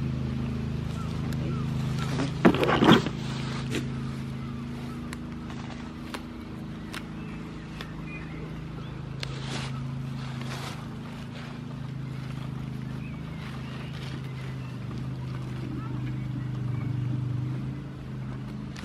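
Goats grazing right at the microphone: crisp tearing and crunching of grass, loudest in a short cluster about two and a half seconds in. Underneath runs the steady low hum of an engine.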